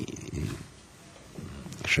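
A pause in a man's speech: a low, creaky hesitation sound in the first half second, then a faint breath near the end before he speaks again.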